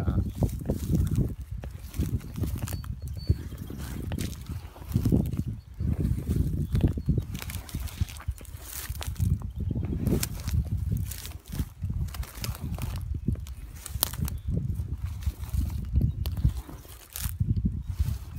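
Dry grass and reed stalks crunching and crackling underfoot in irregular steps, with a low rumble of wind on the microphone.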